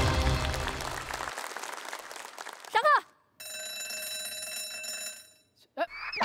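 Background music fading out, then an electric school bell ringing steadily for about two seconds: the bell that signals the start of class.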